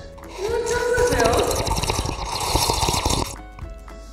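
Toddler sucking chocolate milk up through a straw: a noisy, rapidly rattling slurp lasting about three seconds, stopping shortly before the end.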